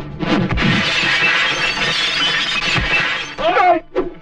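A car windshield smashing as a body is slammed onto it: a heavy thud, then a long crash of breaking glass lasting about three seconds, with a second thud near its end. Music plays underneath, and a man's voice breaks in near the end.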